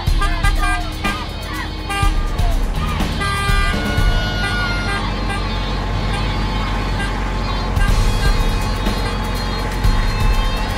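Background music with long held notes.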